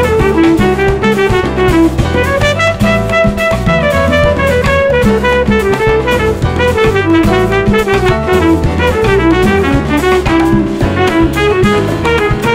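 A Latin jazz sextet playing live: trumpet over congas, drum kit, keyboard, electric guitar and electric bass, with a melody line moving up and down above a steady drum groove.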